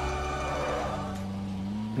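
Soundtrack music from the animated film: sustained tones with a low note rising gently in the second half.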